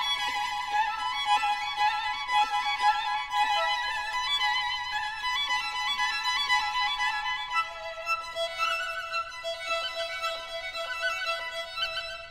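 Background music: a solo violin playing a slow melody with vibrato on held notes.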